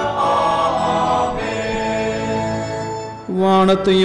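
Church choir singing a chanted hymn line in held notes. About three seconds in the sound dips briefly, then a louder sustained chord begins.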